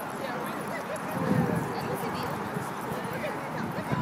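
Dogs barking here and there over the chatter of many people, with one louder burst about a second in.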